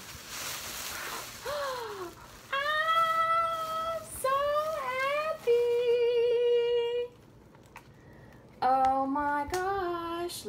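A plastic shopping bag rustling as a hand digs through it. Then several long, drawn-out voice-like notes, some sliding up or down in pitch and one wavering, with more near the end.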